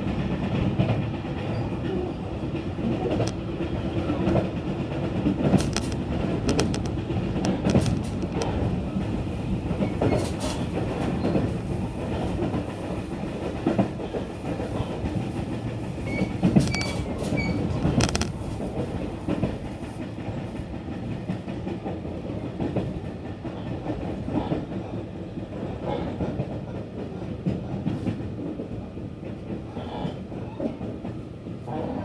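A JR Kyushu BEC819 series battery-electric train running along the line, heard inside the passenger car: a steady rumble of wheels on rail with scattered clicks from rail joints. A brief high tone comes about 17 seconds in.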